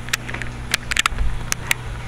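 Handling noise from a hand-held camera being swung about: scattered short clicks and knocks over a low steady hum.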